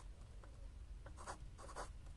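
Faint scratching of a pen writing on notebook paper, in a few short strokes.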